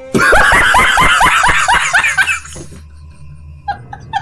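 A man laughing loudly in a rapid run of 'ha' bursts, about five a second, for roughly two seconds, then falling away. Another, quieter run of short pulses starts near the end.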